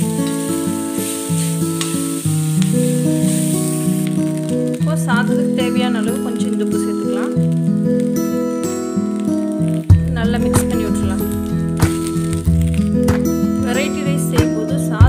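Instrumental background music with long held notes, over the sizzle of a frying pan that fades out after the first few seconds. A single sharp tap sounds a little before ten seconds in.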